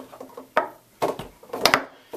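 A foosball being struck by the foosmen on the rods and knocking around the table during a passing drill: a few sharp clacks, the loudest about three quarters of the way through.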